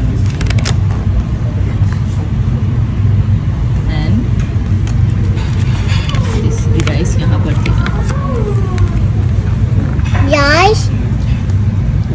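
Restaurant room sound: a steady low rumble with indistinct voices. A child's high voice comes in briefly with rising and falling pitch about ten seconds in, and again at the end.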